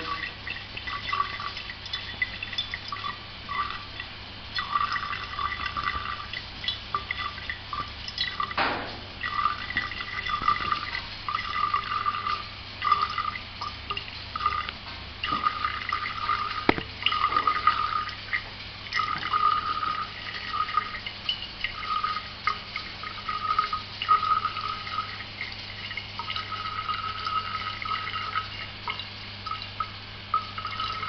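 Alcohol distillate trickling from a copper reflux still through the parrot and dripping into a glass measuring cylinder, at about one millilitre a second: an irregular run of small splashes and gurgles, over a low steady hum.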